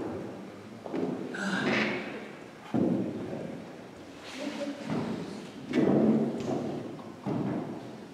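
A few dull thumps mixed with indistinct voices in a large room.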